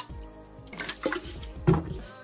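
Liquid pouring from a plastic bottle into a cut-open metal can that already holds some liquid, dilute ammonia and hydrochloric acid being mixed to make ammonium chloride, with a short knock near the end.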